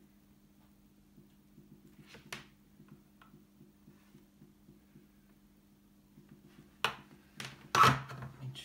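Quiet desoldering work at a bench, under a low steady electrical hum, with a few faint clicks. Near the end come two sharp knocks, the second and louder one as the soldering iron is set back into its stand.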